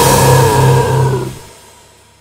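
The final held chord of a brutal death metal song, distorted electric guitars and bass ringing out, then fading away from about a second in to near silence at the end.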